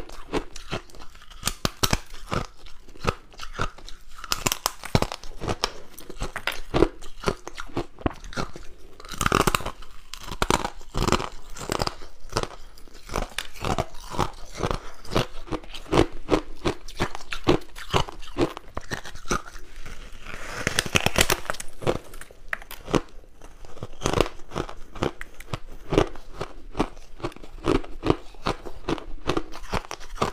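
Crunching and chewing of white, snow-like frosty ice close to the microphone: a steady run of crisp crunches from repeated bites and chews.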